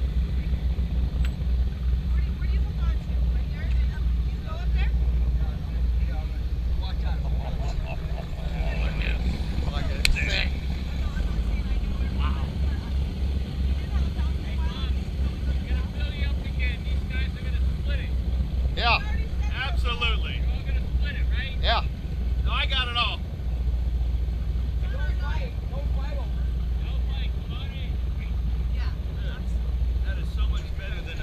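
Twin 825-horsepower race-boat engines idling at low speed, a steady deep rumble with a fast even pulse. Voices come in briefly about halfway through.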